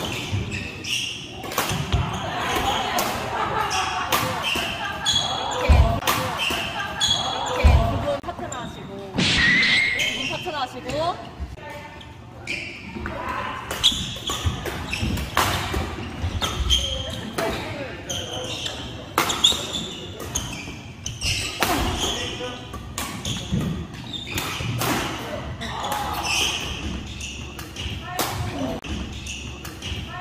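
Badminton doubles rally in a large hall: repeated sharp cracks of rackets striking the shuttlecock, irregularly spaced, with players' voices in the background.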